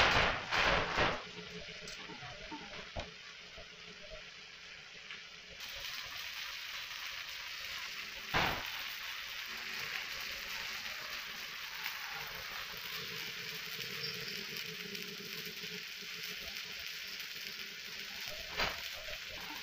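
Steady hiss, with a few sharp knocks in the first second and one loud knock about eight seconds in.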